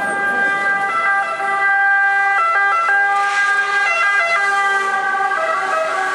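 Emergency vehicle siren sounding loudly in steady tones that step between pitches a few times rather than rising and falling in a wail.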